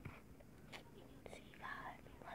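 Very quiet: a person's faint whisper close to the microphone, with a short breathy whispered sound near the end and a few soft clicks.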